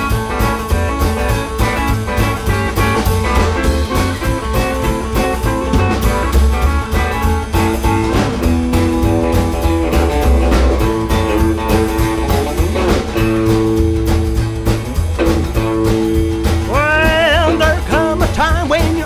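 Rockabilly instrumental break: an electric guitar solo over upright bass and a steady driving beat. Near the end a voice comes in with sliding, bending notes.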